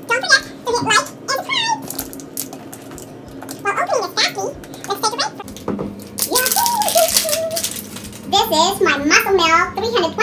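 A woman's voice in short, wordless exclamations while she struggles with the screw lid of a plastic protein-powder tub, with small plastic clicks and rattles from the lid between them.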